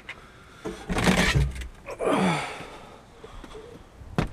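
A door being opened to the outside: a rustling, rumbling burst of handling noise about a second in, then a short groan that falls in pitch.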